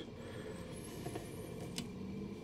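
Quiet room tone with a low steady hum, and one faint click near the end from the plastic action figure being handled.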